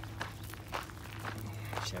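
Footsteps crunching on a gravel path, about two steps a second, over a steady low hum.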